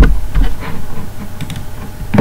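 A quick run of sharp computer keyboard and mouse clicks in the first half second, then a few fainter clicks about a second and a half in.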